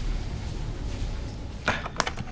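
Low rumble of a body-held camera as the wearer walks, then near the end a sharp clatter and clinks as a hand rummages through a drawer of papers and metal scissors.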